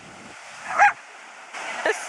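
A small dog gives one short, sharp bark about a second in, over a steady wash of surf.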